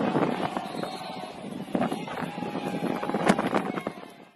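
Pitch-side sound at a football match: wind buffeting the microphone, with scattered knocks, claps and distant voices calling from players and a small crowd. The sound fades out near the end.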